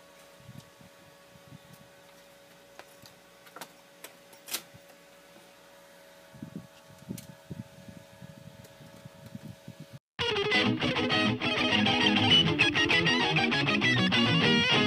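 Faint scattered clicks and taps of hands handling a monitor's metal chassis and circuit boards, over a faint steady hum. About ten seconds in, background rock music with distorted electric guitar cuts in suddenly and is the loudest sound.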